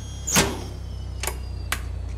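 Steady low hum inside an aircraft cockpit, with a sharp clunk about half a second in and two lighter clicks later.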